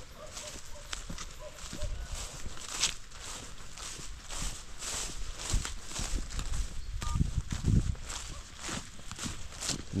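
A person walking over grass and loose, freshly plowed soil: a steady run of footsteps with the brush of grass underfoot.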